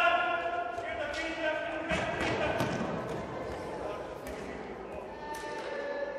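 Futsal players shouting to one another on an echoing indoor court, with a few sharp thuds of the ball being struck on the hard floor.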